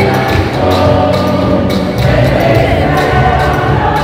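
Church choir singing a hymn in procession, with a steady percussion beat about twice a second.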